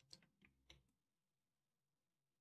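Near silence: room tone with three faint, short clicks in the first second.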